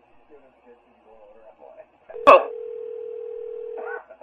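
A telephone line: faint, muffled voices for the first two seconds, then a sharp click about two seconds in, followed by a steady single-pitch telephone tone that holds to the end.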